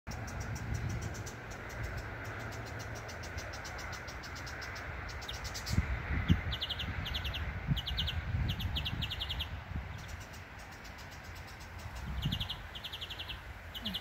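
Unseen birds calling in the treetops: a fast, high, ticking chatter at first, then repeated short bursts of four or five quick notes. There are a few low thumps about six seconds in.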